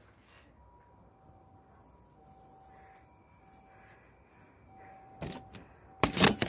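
Quiet outdoor background with faint thin steady tones coming and going, then a few sharp knocks near the end as the phone filming is picked up and handled.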